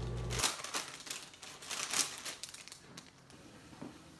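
Crinkling of an empty foil chip bag being handled: scattered crackles, loudest about two seconds in, that thin out to near quiet toward the end.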